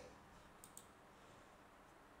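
Near silence with two faint, quick computer mouse clicks about two thirds of a second in.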